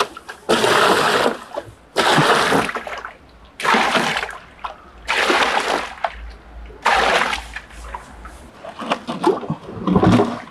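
Water gushing and splashing into a plastic tub in about five separate pours, each about a second long, churning up the water already in it.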